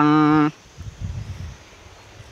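A man's chanted, sung voice holding a long, slightly wavering note that ends about half a second in, followed by faint low noise.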